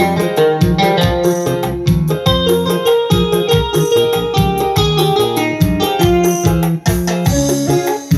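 Electronic arranger keyboard played live: a piano-voiced melody and chords over a steady bass and rhythm backing, with a brief break about seven seconds in.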